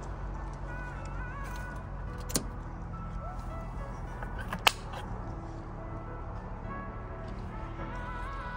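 A single sharp click a little past halfway as the outdoor unit's wall-mounted isolator switch is turned, with a smaller click about two seconds earlier. Under it runs a steady low hum and faint background music.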